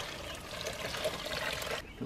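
Water-based deck brightener solution poured from a five-gallon bucket through a fine-mesh strainer bag into a plastic garden sprayer tank, a steady pour that stops near the end.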